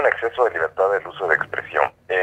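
Speech only: a man talking continuously in Spanish, a recorded voice explaining a legal point.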